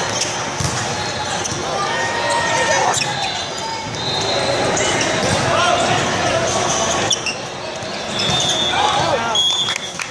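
Indoor volleyball rally: the ball being struck with sharp smacks and sneakers squeaking on the court in short high chirps, over the chatter of many people echoing in a large hall.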